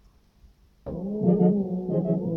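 Electronic beat played from a DJ controller: after near silence, a low, sustained brass-like synth tone with many overtones cuts in suddenly about a second in, with a few short percussive hits over it.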